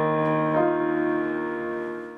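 Slow piano music holding sustained chords, with one chord change about half a second in and a slight fade toward the end.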